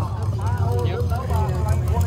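People talking, the words unclear, over a steady low rumble.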